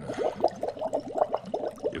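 Live foley liquid gurgling: a rapid run of bubbling, glugging blips made at the microphone as a sound effect for an upset, indigestive stomach.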